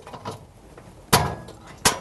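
Two sharp clicks, about three-quarters of a second apart, as an electric oven's thermostat capillary tube is snapped out of its retaining clips at the top of the oven cavity.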